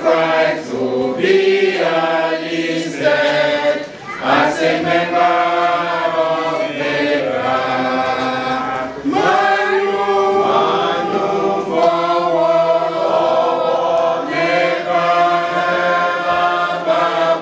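A group of voices singing together without instruments, in held notes that shift in pitch every second or so.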